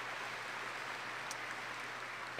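Audience applause: many hands clapping at once, blending into a steady, even sound.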